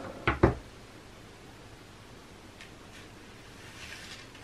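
Two quick knocks of something set down on a wooden workbench, then quiet room tone with a few faint handling rustles.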